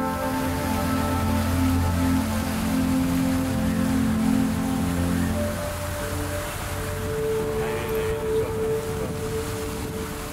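Soft background music with sustained tones over the steady rush of a fountain's water jets spraying and splashing into its pool.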